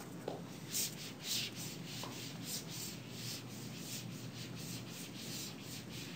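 Faint, repeated dry rubbing strokes on a classroom board, about two to three a second, from writing or erasing by hand, with a couple of light taps near the start.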